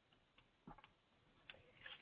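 Near silence with a few faint, short clicks scattered through the pause.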